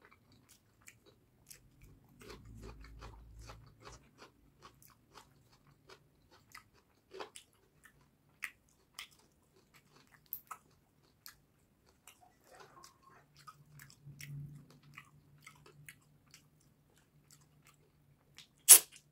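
Faint close-miked eating sounds of fish curry and rice eaten by hand: many short wet mouth clicks and smacks while chewing, with low rumbling chewing a couple of seconds in and again about three-quarters through.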